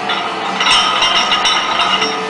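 Iron weight plates on a heavily loaded barbell clinking and rattling against each other, starting about half a second in, as the bar is gripped and shifted in the rack.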